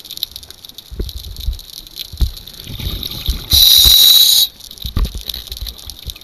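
Underwater sound of a scuba diver: scattered low knocks and bumps of movement against a piling, and about three and a half seconds in a loud, one-second rush of exhaled bubbles from the regulator.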